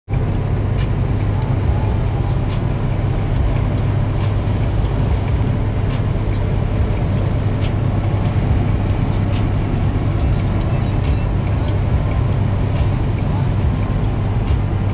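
Car cabin noise at highway speed: a steady low drone of road, tyre and engine noise with no let-up, and a few faint clicks scattered through it.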